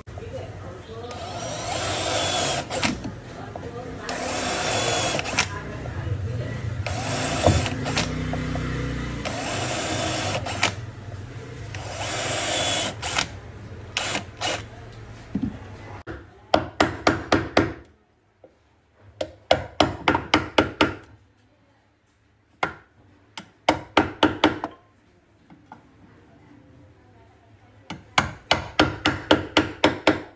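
Carpentry work on a wardrobe drawer fitted with ball-bearing metal slides. For the first half there are stretches of scraping and sliding noise; in the second half come four short bursts of rapid clicking taps, with quiet gaps between them.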